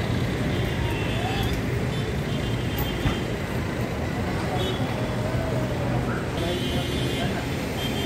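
Steady ambience of many people talking and road vehicles running at an airport terminal's drop-off curb: an even wash of crowd voices and traffic noise.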